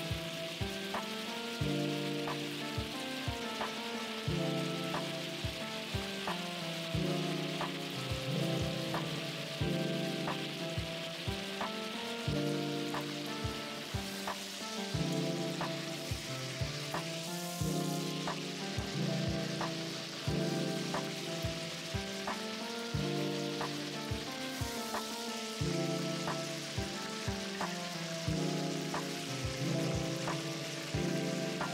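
Pieces of smoked turkey sizzling as they fry in oil in a granite-coated pot, turned now and then with a wooden spoon. Background music with a steady beat plays over it.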